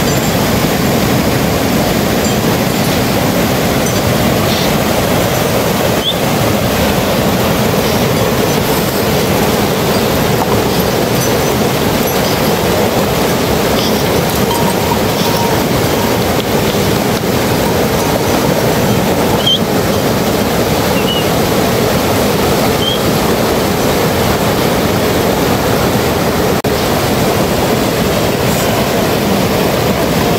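Fast mountain stream rushing steadily over rocks.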